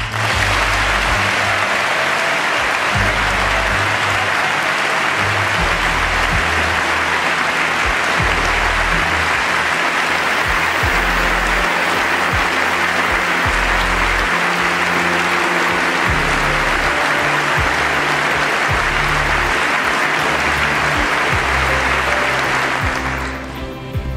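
Loud, sustained applause from a large audience, over background music, dying down near the end.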